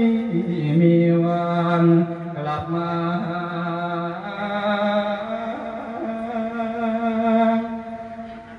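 A male voice singing a Thai funeral lae (a verse sung to send off the soul of the dead), drawing out long held notes that bend and slide in pitch. The line fades away near the end.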